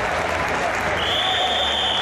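Arena crowd applauding and making noise. About halfway through, a steady, high referee's whistle blast begins and is held for over a second.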